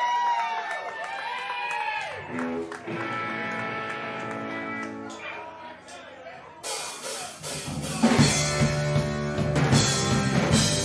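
A live rock band starting a song: a few shouts, then a held electric guitar chord ringing, then drums crashing in about six and a half seconds in. From about eight seconds the full band plays with bass guitar and drum kit.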